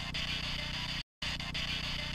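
Camcorder background hiss and hum, a short clip of about a second replayed twice with a brief silent gap between. It is presented as an EVP, a faint voice saying '__ shut up' or '__ get up' that the investigators did not hear at the time.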